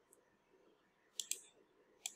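Two quick computer mouse clicks a little over a second in, otherwise near silence.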